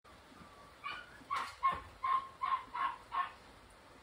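A run of about seven short, high-pitched yaps from an animal, one every half second or so, starting about a second in.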